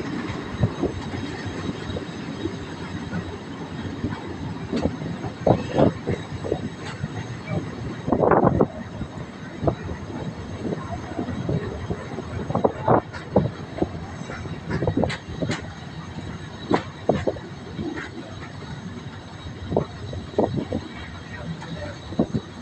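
Mariazellerbahn narrow-gauge electric train running on its track, heard from on board: a steady rumble with irregular clicks and knocks from the wheels on the rails. The loudest knocks come about eight seconds in.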